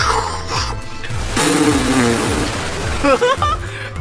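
Cartoon sound effect of water being dumped onto a fire: a rushing splash and hiss starting about a second and a half in and fading out over about a second and a half, over background music.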